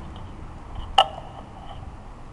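Classical guitar being handled before playing: one sharp tap about halfway through with a brief ringing tone, over a steady low background rumble.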